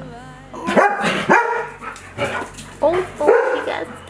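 Puppy barking in a quick run of short, high yaps, about six or seven, starting just under a second in.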